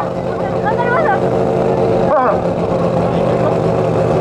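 Toyo Tires GR86 drift car's engine running at low, steady revs as the car rolls without drifting, its note briefly dipping about two seconds in.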